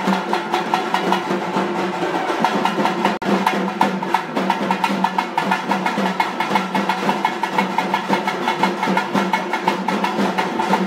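Traditional drums played by a drum troupe in a fast, continuous rhythm of rapid, evenly spaced strokes, with a momentary break about three seconds in.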